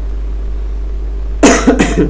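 A man coughing twice in quick succession about one and a half seconds in, over a steady low hum.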